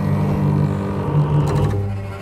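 Trailer score: a sustained low drone, with a short run of quick mechanical clicks about one and a half seconds in.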